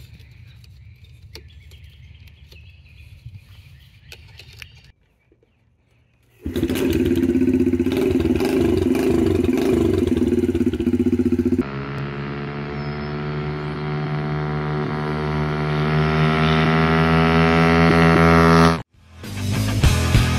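Small metal clicks as a cotter pin is fitted through the exhaust. Then a Yamaha TTR90's four-stroke single-cylinder engine runs loudly through a homemade hardware-cloth and fiberglass-wrap baffle, and its revs climb steadily for several seconds before cutting off. Rock music starts just before the end.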